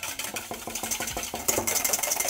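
Wire whisk beating an egg white by hand in a stainless steel mixing bowl, the wires ticking and scraping against the metal in quick, even strokes as it is whipped toward a fluffy foam.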